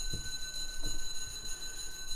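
Soft rubbing of a cloth wiping a whiteboard, with a steady faint high-pitched whine underneath.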